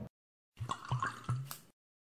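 Liquid pouring and dripping into a glass: a quick run of about five drips over about a second, starting about half a second in, then stopping.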